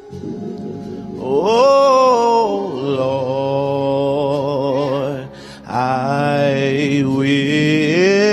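A man singing gospel into a handheld microphone, holding long notes with vibrato and running through wavering runs. There is a short break for breath about five and a half seconds in, then another long note.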